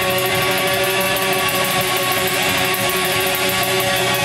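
Live black metal band playing: electric guitars holding sustained, droning chords in a dense, loud wash of sound.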